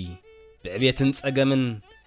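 A low man's voice singing one drawn-out, quavering phrase over music, starting about half a second in and ending shortly before the end.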